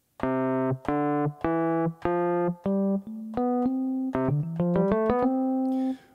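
Electric piano sound (MPC Beats' Electric-Rhodes program) played one note at a time from the pads of an Akai MPK Mini Play MK3 set to a C major scale. The notes climb the scale about two a second at first, then a quicker run climbs again to a held top note near the end.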